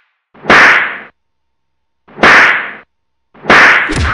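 Three loud slap hits, spaced about a second and a half apart, each a sharp crack with a short fading tail.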